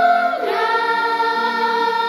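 Children's choir singing a Catholic song in long held notes, sliding to a new chord about half a second in.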